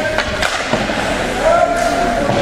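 Ice hockey play in an arena: skate blades scraping the ice and two sharp stick-on-puck clacks about half a second in, under spectators' voices with a held shout near the end.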